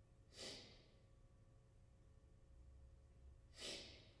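Two audible breaths from a man, short and breathy, one about half a second in and one near the end, with near silence between them.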